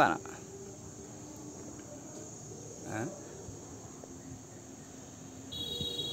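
Faint, steady high-pitched chirring of insects. Near the end, a cluster of higher steady tones joins in.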